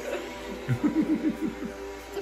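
A person laughing, a quick run of about six short falling 'ha' beats about a second in, over steady background music.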